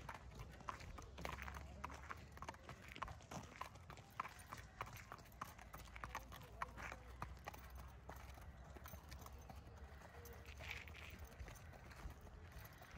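Hooves of two walking racehorses clip-clopping, an uneven run of several clops a second.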